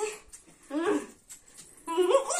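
A young woman's short, high-pitched vocal sound, heard once a little under a second in. Another voice starts right at the end.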